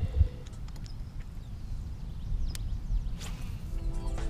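Wind rumbling on an outdoor action-camera microphone, with a low thump at the start, a few small clicks and a short hiss about three seconds in; background music comes back in near the end.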